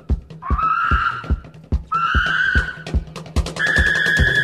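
Psychobilly rock band playing: a driving drum beat over a steady bass line, with two rising, sliding high notes and then a long held high note starting about three and a half seconds in.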